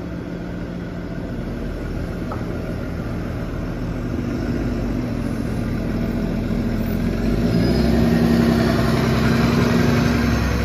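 New Flyer XDE40 diesel-electric hybrid bus pulling away and driving past, its engine and drive hum growing steadily louder, loudest near the end.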